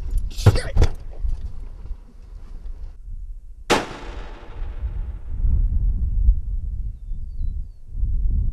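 A single handgun shot about four seconds in: a sharp crack with a long echoing tail. It comes after a couple of quick knocks near the start, and a low rumble follows.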